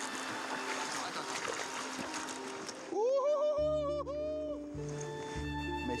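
Shallow river water running over rocks. About three seconds in, background music comes in: a held, pitched note over steady low bass tones.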